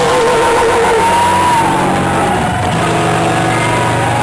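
Punk rock band playing live: distorted electric guitars holding long chords over bass and drums, loud and dense.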